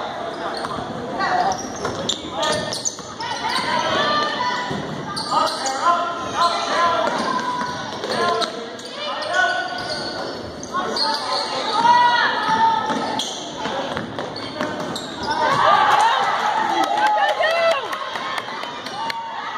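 A basketball being dribbled on a hardwood gym floor, with players' and spectators' voices echoing around the gym.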